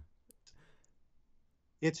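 A pause in speech, nearly quiet, with a few faint clicks in the first second; a man's voice starts again near the end.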